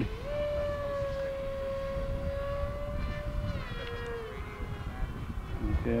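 The FF-Demon's electric power system whines in flight: an 1800 kV 2806.5 brushless motor turning a 7x5 propeller. The tone holds steady, then slides down in pitch about three and a half seconds in and fades, over a low rumble of wind.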